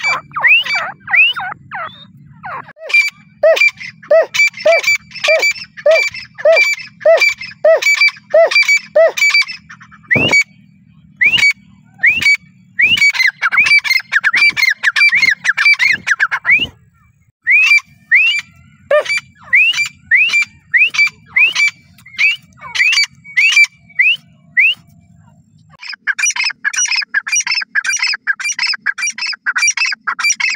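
Grey francolin calling: long runs of short, sharp, ringing notes, two to three a second, broken by brief pauses. In the middle stretches the notes come thicker and overlap.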